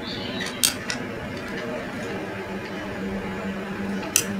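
Small handling clicks from a circuit board and its wires being positioned for soldering: two sharp clicks about half a second and one second in, over a steady low hum.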